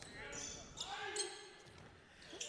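Faint sounds of basketball play on a hardwood court: a ball bouncing, short sneaker squeaks and players calling out.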